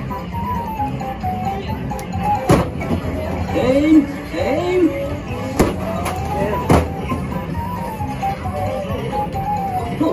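Arcade machine music plays a wavering tune, with three sharp knocks, about 2.5 s, 5.6 s and 6.7 s in, of balls striking the clown targets of a Down the Clown ball-toss game.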